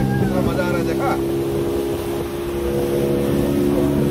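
Motorboat engine running steadily at speed, a continuous even drone that holds its pitch.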